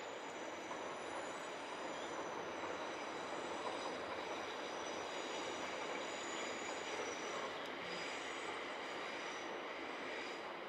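Steady rushing outdoor background noise with no break, with faint high steady tones above it.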